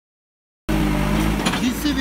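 JCB 3CX backhoe loader's diesel engine running steadily while the machine moves through mud, cutting in abruptly about two-thirds of a second in. A voice begins near the end.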